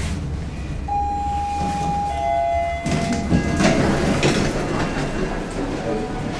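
Elevator arriving at a floor: the car's low running hum dies away, and a two-note arrival chime sounds from about a second in, a higher note and then a lower one. From about three seconds in, the sliding car and landing doors open with a rush of noise.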